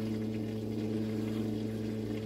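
A steady low hum with several even overtones, unchanging throughout.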